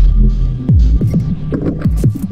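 Experimental electronic music: loud, distorted bass with deep notes that drop steeply in pitch a few times, among short bursts of noise and clicks.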